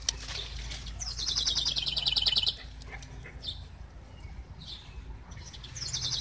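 A songbird singing a fast trill of high, rapidly repeated notes for about a second and a half, starting about a second in and dropping slightly in pitch, followed by a few scattered faint chirps.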